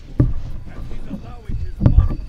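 Deep, heavy thuds from the anime episode's soundtrack, a dramatic heartbeat-like sound effect: one just after the start and a louder one about a second and a half later, with faint voices and score under them.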